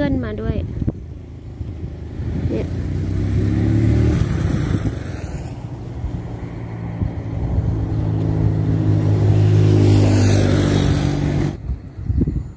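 A motor vehicle engine running close by: a steady low drone that grows louder about four seconds in and again near ten seconds, then cuts off suddenly near the end.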